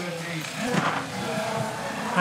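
Faint voices over the steady noise of a pack of cyclo-cross bikes riding past on a wet course.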